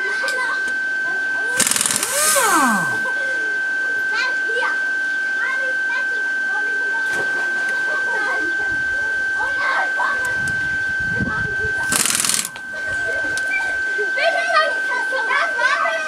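Pneumatic impact wrench on a car's wheel nuts, firing two short bursts: one about two seconds in and one near the end. A steady high-pitched whine runs beneath.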